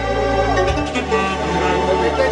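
Live wedding band music: a man singing a wavering, ornamented melody into a microphone over sustained keyboard bass and chords, the bass note changing under him.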